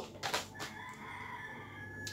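A rooster crowing faintly: one drawn-out call, held for over a second.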